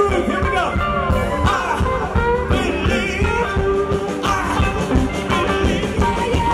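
Live rock and roll band playing loudly: drums, electric guitars, bass and keyboard, with a lead line bending in pitch over the steady beat.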